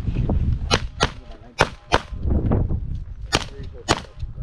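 Handgun shots from a competitor firing a stage: six sharp reports in three quick pairs, with a short pause after the second pair. Two shots per target is the usual IDPA pattern.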